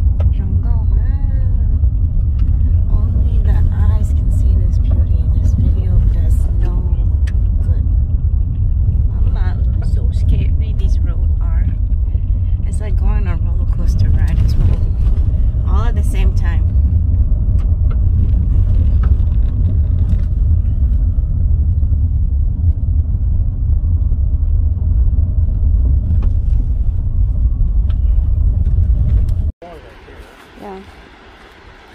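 Car cabin road noise on a gravel road: a loud, steady low rumble of the tyres on gravel and the car's running gear. It cuts off suddenly near the end.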